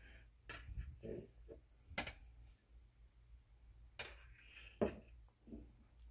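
A few sharp clicks and knocks, about four in all, spread through a quiet stretch, as a tape measure is handled and set down on a laminate countertop.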